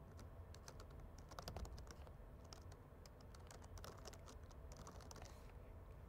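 Faint computer keyboard typing: a run of quick, irregular keystrokes.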